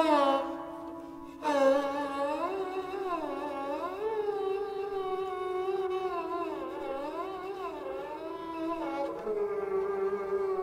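Sarangi bowed softly with a German-style contrabass bow. A held note fades out over the first second or so, then a new note starts and glides slowly up and down in long, wavering slides.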